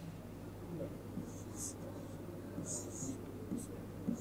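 Pen stylus writing on an interactive display board, a few short faint scratchy strokes as numbers are written, over a faint steady hum.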